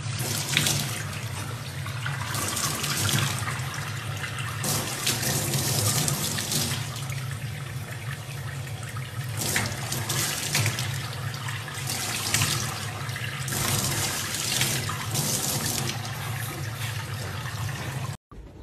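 Tap water running from a faucet into a stainless steel sink and splashing over a young chimpanzee's hands and body, swelling and easing every second or two, with a steady low hum underneath.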